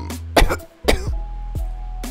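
A man coughing twice, about half a second apart, on the fine foam dust rising from the opened tumbler tub, over background music.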